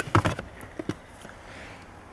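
Plastic clicks and knocks from the OBD2 diagnostic connector being worked free under the dashboard: a quick run of clicks in the first half second, then two more just before the middle.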